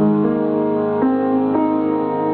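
Solo upright piano playing a gentle melody over sustained chords, with new notes struck about every half second.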